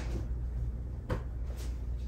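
Throw pillows being set down and arranged on a made bed: soft fabric thuds and rustling, with one sharper thump about a second in.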